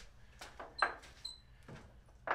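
A few light clicks and knocks as small freshly cut steel pieces are handled on a workbench, two of them ringing briefly like struck metal.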